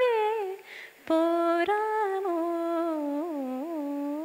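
A woman singing unaccompanied, without words. A phrase ends on a falling pitch about half a second in, followed by a short breath, then a long held note with small ornamental turns in pitch near the end.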